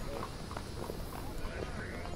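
Footsteps: a run of light, irregular clicks over faint background crowd chatter.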